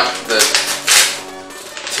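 Folded cardboard being pulled open by hand: three short rips and crackles in the first second, then quieter handling.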